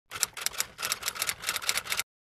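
Rapid, sharp mechanical clicking in quick uneven runs, about a dozen clicks, like a typewriter sound effect, cutting off suddenly at the end.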